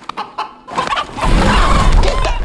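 Rooster clucking and squawking, breaking out loudly just under a second in amid a noisy flapping commotion.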